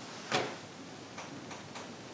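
A pause in a woman's talk: one short soft sound about a third of a second in, then a few faint ticks over the steady hiss of an old recording.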